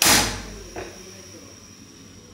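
Gas stove burner lighting: a sudden loud whoosh as the gas catches, dying away within about half a second, then the burner's faint steady hiss as the flame burns under the pan. A small click a little under a second in.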